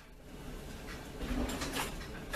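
A pot of chicken stew simmering faintly on the stove, with a brief burst of noise near the end.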